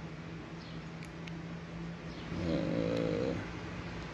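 A man's brief low hum or murmur, about a second long, over a steady background hum. A couple of faint clicks come earlier, from the e-bike display's handlebar button pad being pressed.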